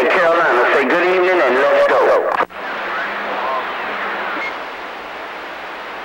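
CB radio receiver: a station's voice comes through strongly, then cuts off suddenly about two and a half seconds in as that station unkeys, leaving steady static hiss on the channel.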